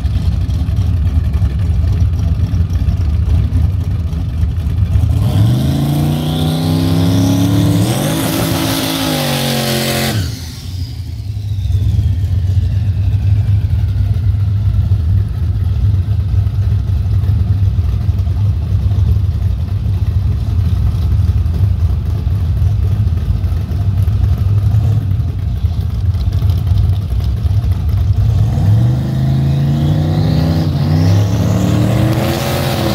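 Turbocharged Ford Fairmont station wagon's engine idling loudly, then revving up through a climbing pitch with a hiss of spinning tyres for about five seconds, which fits a burnout before staging; the revving cuts off abruptly. It settles back to a steady idle, and near the end the revs climb again at the starting line.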